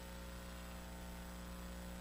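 Steady electrical mains hum with a faint hiss underneath, unchanging throughout.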